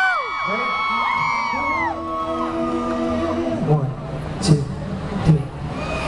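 A cheering crowd with high gliding screams and whoops, then male voices start an unaccompanied a cappella harmony, holding steady notes. Near the end come sharp percussive hits about a second apart under a low held tone.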